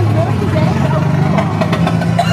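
Engine of the life-size Mater tow-truck vehicle running as it rolls past, a steady low hum.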